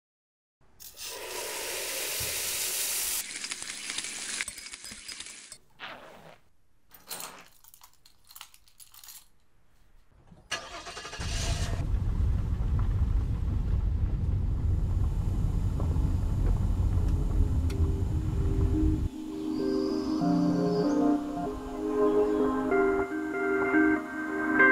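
Air hissing as a scuba cylinder valve is opened, followed by a few short bursts of noise and a low steady rumble lasting several seconds. Music with plucked melodic notes comes in near the end.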